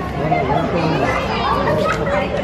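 Children's voices and people chattering, with no single clear speaker.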